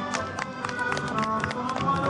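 Accordion music with held notes over a steady clicking beat, with people's voices mixed in.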